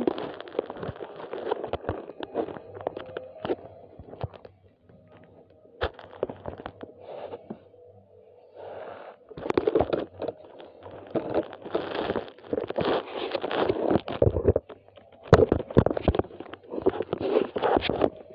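Irregular clattering, knocking and rustling of plastic toy cars and a plastic toy track being handled close to the microphone. It is sparse and quieter for a few seconds in the middle, then busier in the second half.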